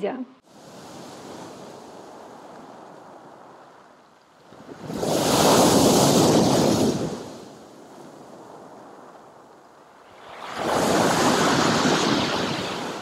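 Sea waves breaking on a pebble beach and against a concrete pier: two loud crashes about five seconds apart, each building and fading over a couple of seconds, with a softer wash of surf between them.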